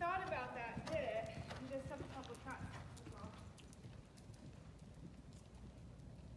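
Hoofbeats of a horse cantering on the sand footing of an indoor arena, a run of soft thuds that grows fainter as the horse moves away. A person's voice is heard over the first three seconds.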